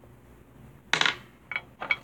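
A sharp clatter of small hard objects about a second in, followed by two short, lightly ringing clinks near the end: makeup tools or containers being handled and set down.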